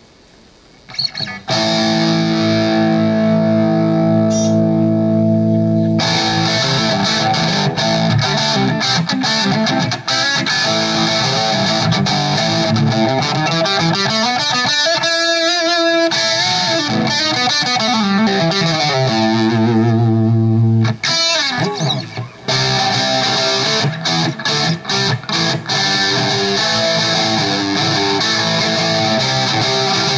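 Electric guitar played through a Crate GT1200H head and its matching 4x12 cabinet on the distorted rhythm channel, EQ set flat. After a brief pause it opens with a long held chord, then goes into riffing with chords sliding down and back up in pitch midway, and stop-start playing with short breaks near the end.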